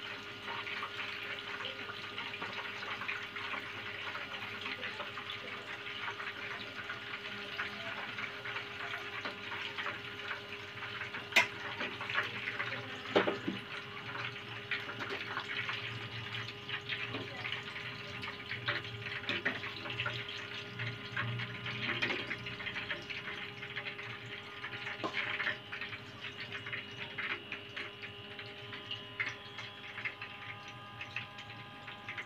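Tofu pieces deep-frying in hot oil in a wok: a steady crackling sizzle full of tiny pops, with a few sharp clinks of a metal utensil against the wok or bowl, the loudest a little before the middle.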